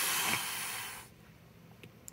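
A person's breathy hissing mouth noise, about a second long, fading out.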